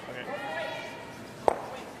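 A single sharp knock about one and a half seconds in, amid players' voices.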